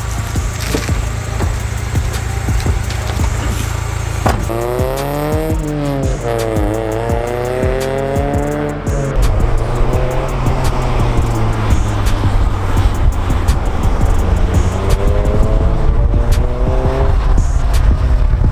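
Acura Integra's four-cylinder engine accelerating, its note climbing in pitch, dropping sharply at a shift about six seconds in, then climbing again; it rises once more near the end. Background music with a steady beat plays under it.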